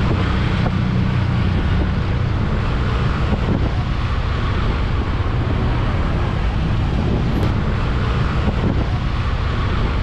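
Steady wind noise on the microphone over a motorcycle's engine and road noise, riding through slow traffic. A low hum runs evenly throughout.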